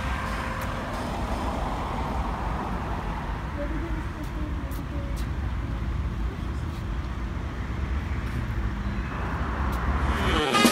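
Road traffic on a nearby street: a steady wash of car noise with low rumble, a little fuller in the first few seconds.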